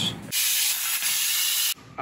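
High-pressure abrasive waterjet stream hissing as it cuts through a ballistic-gel dummy hand. The hiss starts suddenly and cuts off sharply after about a second and a half.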